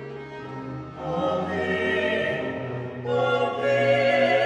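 Vocal quartet, one voice per part (soprano, alto, tenor, bass), singing a Baroque cantata movement with period-instrument strings and organ. The music is softer at first, then swells about a second in and again near the end.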